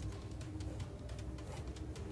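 Faint cooing of a dove, a few low repeated notes, over a low background rumble.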